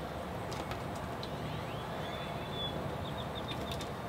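Faint high bird chirps, short thin notes, starting about a second in and recurring to near the end, over a steady low background rumble.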